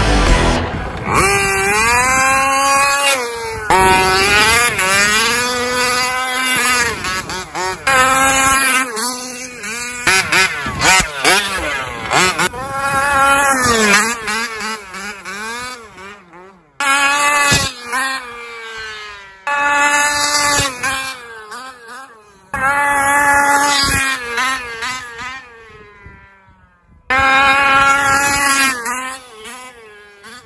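Radio-controlled monster truck's motor revving up and down in repeated bursts of throttle, pitch rising and falling, with short breaks between bursts.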